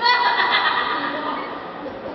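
A loud, wavering, high-pitched cry that starts suddenly and fades over about a second.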